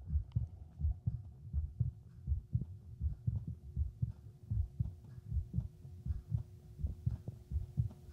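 Heartbeat picked up through a Littmann CORE digital stethoscope held on the chest over a shirt: low lub-dub thumps repeating at a steady rhythm, with a faint steady hum behind them.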